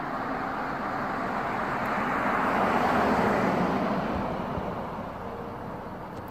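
A car passing by on the street: its road noise swells to a peak about three seconds in and then fades away.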